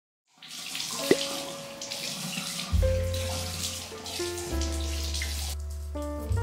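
A bathroom tap running into a sink, with a sharp click about a second in, stopping a little before the end. Background music with sustained keyboard notes and a low bass line plays under it.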